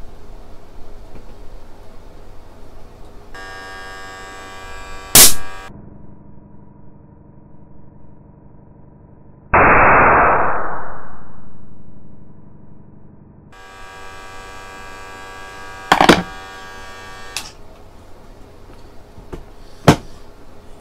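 A nebulizer's small electric air compressor runs with a steady hum while it inflates a condom. About five seconds in, the condom bursts with a sharp bang, the loudest sound here. A few seconds later a loud rush of noise starts suddenly and fades over about three seconds, while the compressor keeps humming and a few clicks follow near the end.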